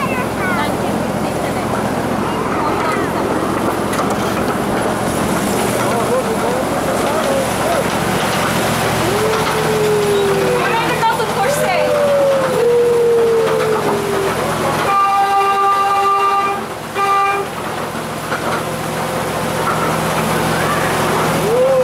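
Small ride train running on its track into a metal tunnel, with passengers whooping in long sliding calls. About three-quarters through, a horn sounds twice, a long steady toot and then a short one.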